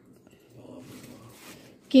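Quiet room with faint indistinct rustling and murmur; near the end a voice starts speaking loudly.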